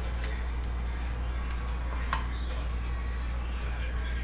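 Bowman Chrome trading cards being picked up and slid against one another in the hand, with a few light clicks. A steady low hum runs underneath.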